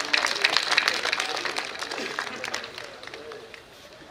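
Audience applauding, loudest at first and dying away over about three seconds.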